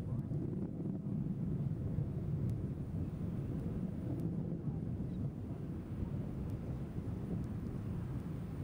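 Low, steady rumble of a Delta IV rocket in powered flight, its first-stage engine and strap-on solid motors heard from a distance.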